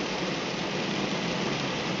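Heavy thunderstorm rain pouring down, a steady even hiss.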